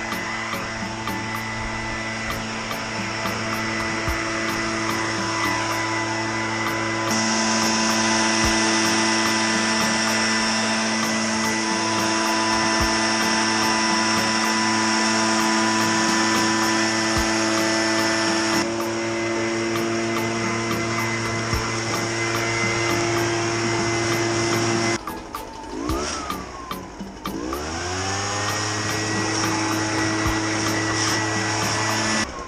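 Echo PB-755ST backpack leaf blower's two-stroke engine running at high throttle, blowing leaves. Its pitch steps up about seven seconds in; a few seconds before the end it drops off sharply, then revs back up to full speed.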